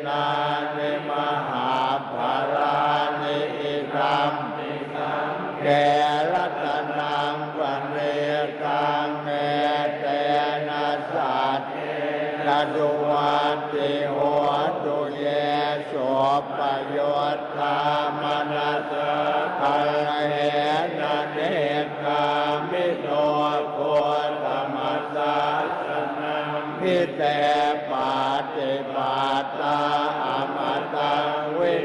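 A large group of Thai Buddhist monks chanting Pali blessing verses in unison: a steady, low, drawn-out recitation with no pauses.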